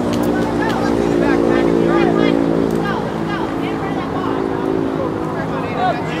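Voices calling out across a youth soccer field over a steady motor-like hum that is louder in the first half and again near the end.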